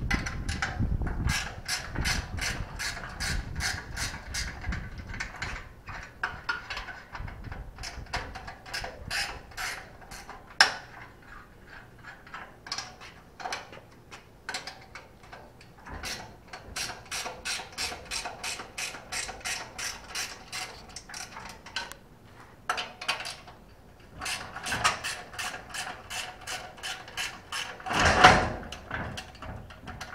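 Socket ratchet wrench clicking in runs of rapid, even clicks with short pauses between, as it works the bolts of a boat trailer's bow stop bracket. A louder metal clunk comes near the end.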